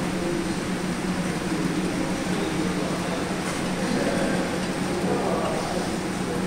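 A steady low hum over an even rushing noise, unchanging throughout, with no distinct clanks or thuds standing out.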